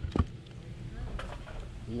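Quiet handling of a sparkling wine bottle as the cork is worked loose by hand, with a short sharp knock about a quarter second in and a few faint ticks later.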